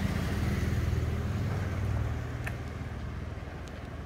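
Small motorcycle engine of a sidecar street-vendor cart running steadily and fading as it moves off down the street.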